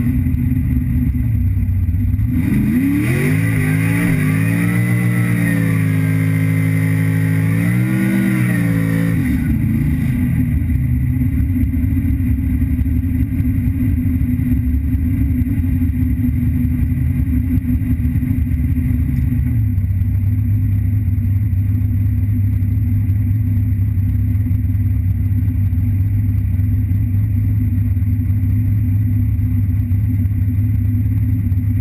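Drag car engine idling loudly, heard from inside the cabin. About two and a half seconds in it is revved up and held for several seconds with a dip and a second rise, then drops back to a steady idle around nine seconds in; the idle note deepens slightly around twenty seconds in.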